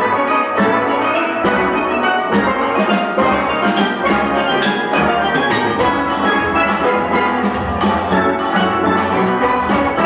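A large steelband playing live, many steel pans sounding together in a fast piece with a steady beat of regular strikes.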